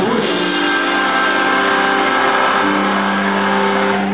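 Distorted electric guitars holding one sustained chord as a live rock song rings out, with a new note entering about two and a half seconds in.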